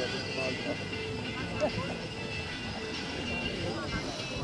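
Background music and people talking, with a horse cantering on a sand arena.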